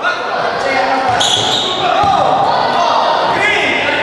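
A futsal ball thudding on a wooden sports-hall floor amid players' shouts, all echoing in the large hall.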